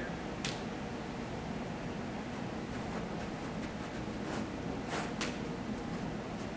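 Steady room hiss with a few faint soft taps and rustles as a person walks out on his hands over an exercise ball on a carpeted floor.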